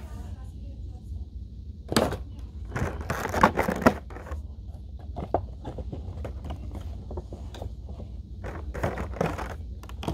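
Funko Pop's cardboard box and clear plastic insert being handled: plastic crinkling and rustling in loud bursts about two seconds in and again from three to four seconds, then a run of small clicks and taps. A steady low hum lies underneath.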